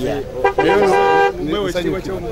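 A vehicle horn sounding once, a steady honk of under a second about half a second in.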